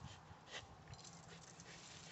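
Near silence with faint breathing and scuffling from a pit bull hanging on and tugging a spring pole, and a short, slightly louder noise about half a second in.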